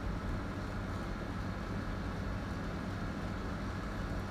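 Steady low background rumble with a faint hum and no distinct events.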